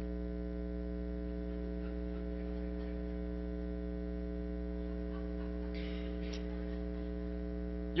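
Steady electrical mains hum with a buzzy stack of overtones, holding at an even level throughout, with no laughter or other sound rising above it.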